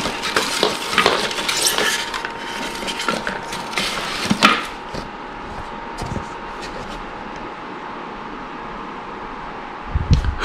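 Packaging being handled: plastic bags and wrapping paper rustling and crinkling, with a few light knocks as a small plastic pancake maker is set down and its cardboard box picked up. The handling is busiest in the first half and then quieter.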